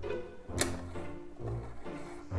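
Instrumental background music with steady bass notes, and one sharp click a little over half a second in.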